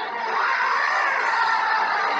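A giant bird monster's long, wavering screech, its pitch sliding up and down, over a steady hiss of rain.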